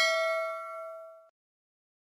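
Notification-bell sound effect of a subscribe animation: a single bell ding ringing out with several clear tones and fading away, ending just over a second in.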